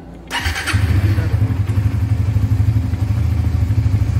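A Suzuki GSX-R150's single-cylinder engine is started on the electric starter: a brief crank about a third of a second in, catching at once, then idling steadily.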